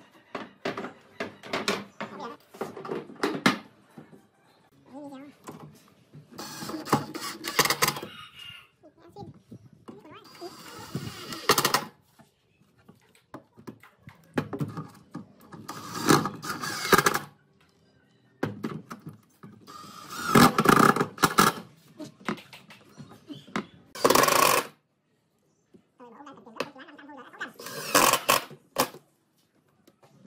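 Cordless drill/driver running in several short bursts to drive screws into a wooden cabinet, with knocks and clicks of wood and hardware being handled between the bursts.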